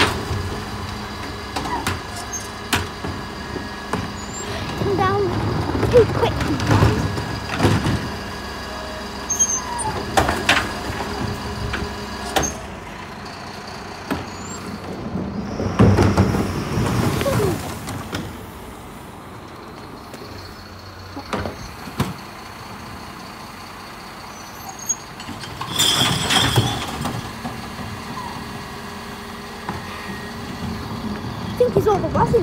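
Mercedes-Benz Econic bin lorry running while its Terberg OmniDEL lifts tip recycling bins, with repeated clunks and knocks over a steady engine hum. There are several louder surges, and a quieter spell about two-thirds of the way through.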